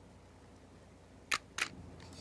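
Two sharp clicks about a quarter second apart, a little past halfway, over a quiet background that turns to a low rumble after them.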